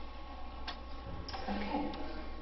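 Papers and a pen handled at a lectern: a few small sharp clicks over a steady low electrical hum.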